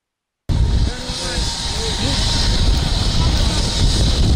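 Light turbine helicopter (Eurocopter EC130 type) landing, its engine and rotor making a steady deep rumble with a strong hiss, cutting in abruptly about half a second in. Voices briefly call out over it.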